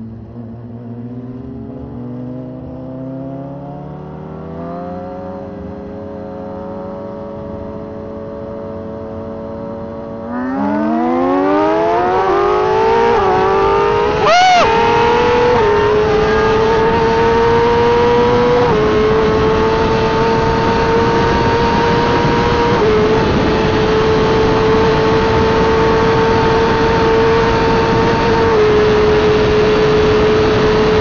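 Suzuki GSX-R1000 inline-four at part throttle with pitch rising slowly, then about ten seconds in going to full throttle for a roll race: the revs climb fast with quick upshifts that drop the pitch, and there is a brief loud burst near the middle. After that it holds high revs in the top gears, with each shift a small step down, under heavy wind rush.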